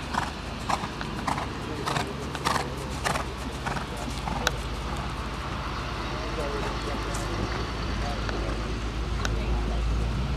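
Horse's hooves striking the arena dirt at a canter, one beat roughly every 0.6 s, plainest over the first four or five seconds and then fading. Under it is a steady low rumble that grows louder toward the end.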